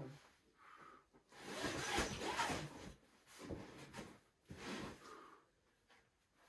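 A climber's hard, noisy breaths out while pulling through moves on an overhanging boulder problem: one long exhale about a second and a half in, then two shorter ones.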